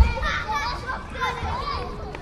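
Several children's voices chattering and calling out at play, overlapping one another.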